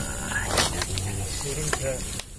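Indistinct voices of people talking, with a short scraping noise about half a second in.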